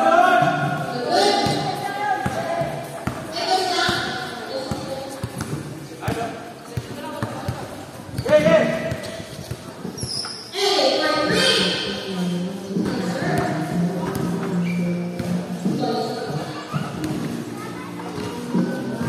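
Basketball bouncing on a concrete court floor among players' shouts and chatter, in a large metal-roofed court.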